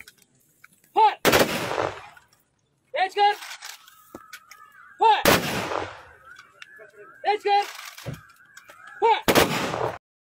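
Ceremonial gun salute: a squad of rifles fires three volleys about four seconds apart, each one ragged and trailing on for nearly a second. A shouted drill command comes just before each volley, with more shouted commands between them.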